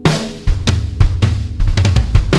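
Pitched-down rock recording: the full band comes in suddenly at the start, with a drum kit beating out kick, snare and cymbal hits over bass and guitar.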